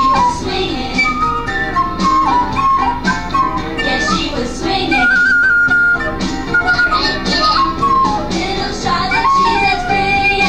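Music: a melody of clear single notes played on a small handheld wind instrument, over a fuller musical accompaniment.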